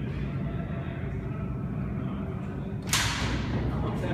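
Steady low background rumble. About three seconds in, a sudden hissing whoosh fades away over about a second as a glass door is swung open.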